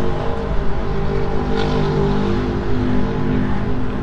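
2018 Harley-Davidson Fat Boy's Stage IV 128-cubic-inch Milwaukee-Eight V-twin with an aftermarket exhaust, idling steadily.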